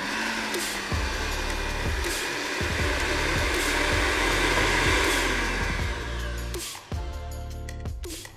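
Countertop blender running at full speed, dry-grinding whole cumin and fennel seeds into powder, then winding down and stopping about seven seconds in.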